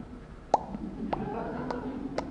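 A few short, sharp clicks, three of them roughly half a second apart, with a faint held voiced sound under the later ones.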